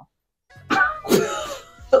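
A brief dead silence, then about half a second in a woman's short, breathy vocal outburst, over faint steady background music.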